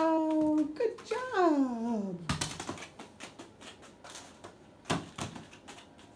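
Umbrella cockatoo tossing and pecking a thin wooden plank on a foam mat: irregular wooden knocks and taps, with a louder knock a couple of seconds in and another near five seconds.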